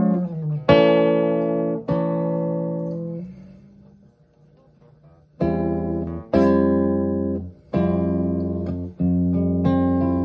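Nylon-string classical guitar strummed in slow chord-change practice. Two chords ring out and fade, a moment of near silence follows, then chords are struck again about once a second, each left to ring until the next change.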